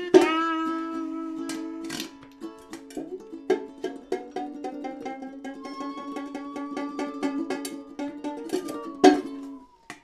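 Live ensemble of homemade instruments playing film-accompaniment music: plucked strings over a held low drone, with a high tone that glides slowly up and then down in the second half. There is a sharp hit near the start and another about nine seconds in, and the music breaks off shortly before the end.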